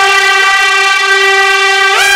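A loud, sustained horn-like tone held on one steady pitch, with a brief upward bend near the end: a dramatic sound-effect sting in the show's background music.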